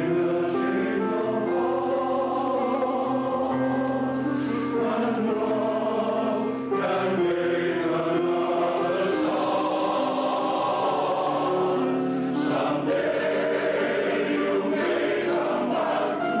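Male voice choir singing unaccompanied in close harmony, holding long chords that shift from one to the next, with a short break for breath about six and a half seconds in.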